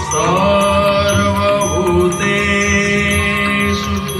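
Odissi devotional music: a chanted Sanskrit hymn sung in long, held notes over a steady drone, with percussion keeping an even beat.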